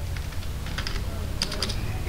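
Computer keyboard being typed on: a run of quick key clicks, thicker in the second half, over a low steady hum.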